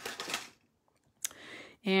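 Scissors cutting a strip of ribbon: a short rustling snip, then a single click and a brief rustle.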